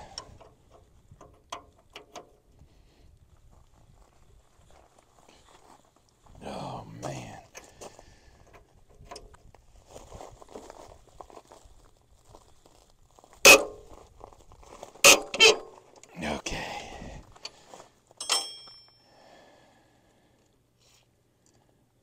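A wrench and steel parts clanking while a rusted, seized bolt is worked loose from the reach of an old wagon running gear. There are three loud, sharp metal knocks in the middle and a single ringing metallic clink a few seconds later, with faint clicks and scuffs between them.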